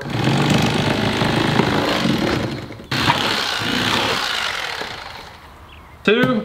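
Electric knife running as it cuts the skin off a catfish fillet, its motor buzzing steadily. It stops for an instant about three seconds in, then runs again and dies away near the end.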